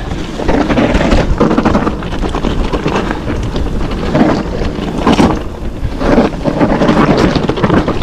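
Mountain bike descending a dirt trail at speed: wind buffeting the camera microphone over a steady rumble of tyres on the ground, with frequent irregular rattles and knocks from the bike over bumps.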